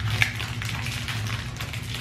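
Foil-lined wrapper of an energy bar crinkling and crackling in irregular small ticks as it is torn and peeled open by hand.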